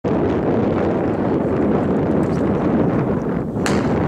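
Steady wind buffeting the microphone, then a single sharp starter's pistol shot near the end, starting the race.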